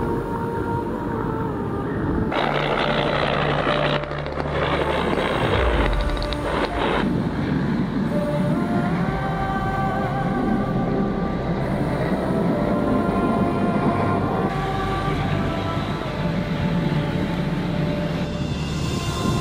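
Background music with sustained, slowly shifting notes over a helicopter's rotor and engine noise, which is densest in the first several seconds.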